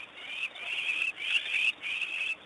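Painted dogs (African wild dogs) twittering: high-pitched chirping calls in short bursts, about two a second.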